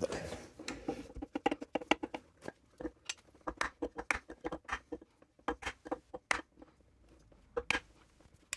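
Irregular light knocks and clicks as a Dana 44 differential carrier is tapped down into its axle housing through a wooden block. The carrier resists seating: the bearing preload is set too tight.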